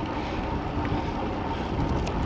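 Steady wind rush over the microphone of a camera mounted on a moving bicycle, with road noise beneath it, while riding.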